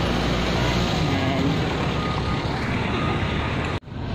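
Steady noise of road traffic with a low rumble, cutting off abruptly near the end.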